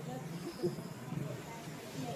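Indistinct voices talking in the background, with a brief louder sound about two-thirds of a second in.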